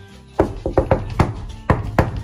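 Background music with steady low notes and a run of sharp percussive hits starting about half a second in.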